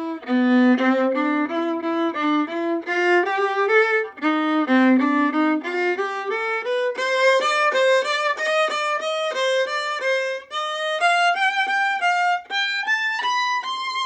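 Solo violin playing an étude with separate bow strokes, one note per bow and no slurs, a steady stream of detached notes. The line moves up and down and climbs higher in the second half.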